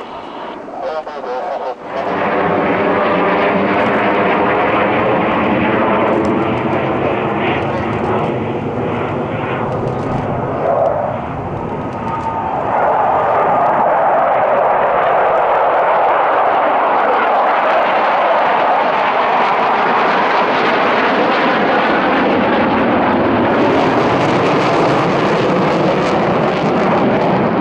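Jet aircraft flying past: a passenger jet's turbofans at first, with a whine of many closely spaced tones that slowly shift in pitch. From about twelve seconds in comes the louder, steady roar of a formation of military fighter jets.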